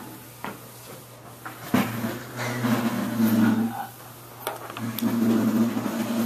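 Knocks and clicks, the sharpest about two seconds in, with a low steady drone that comes in after it, breaks off briefly and returns: handling noise close to the microphone.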